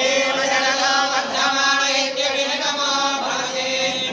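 Priests chanting Sanskrit Vedic mantras in a steady, sung recitation.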